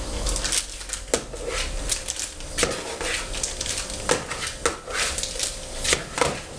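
Kitchen utensils clicking and clinking against a bowl as a hand sorts through them: a handful of sharp clicks at irregular intervals.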